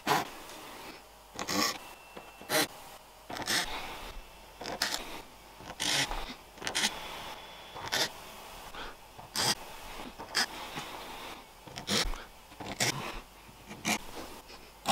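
Small hand file scraping the teeth of a turtle-shell comb, a stroke about once a second.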